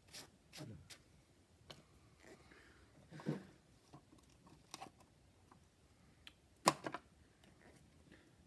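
Small handling sounds of objects being moved on a workbench: scattered light clicks and scrapes, a duller knock about three seconds in, and one sharp click followed by a couple of quicker ones about two-thirds through.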